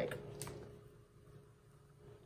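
Silicone spatula stirring thick soap batter in a plastic pitcher: faint, soft stirring with one light click about half a second in, over a low steady hum.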